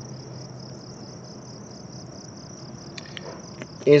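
Crickets chirping: a steady, high-pitched pulsing that repeats evenly, with a few faint ticks about three seconds in.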